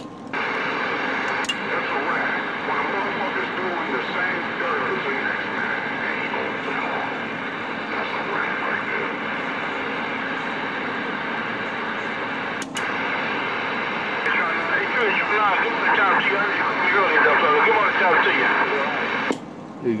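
Galaxy CB radio receiving a weak, garbled transmission on channel 19: steady static and hum with distorted, warbling voices underneath, clearest near the end. It opens abruptly just after the start, drops out briefly about two-thirds of the way through, and cuts off sharply about a second before the end.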